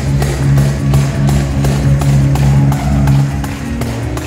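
Live church praise music: held low chords over a quick, steady percussive beat, with a tambourine shaken in time.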